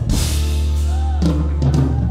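Live band music led by a drum kit: a cymbal crash at the start over a held bass note, and the bass line moves on about halfway through.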